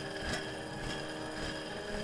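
Steady machinery hum of a factory conveyor line with faint, regular clicks about twice a second.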